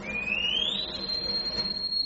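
A single high, pure tone that glides upward over about the first second, then holds steady until it cuts off suddenly.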